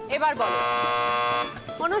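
Game-show answer buzzer sounding one steady electronic tone for about a second as a contestant buzzes in.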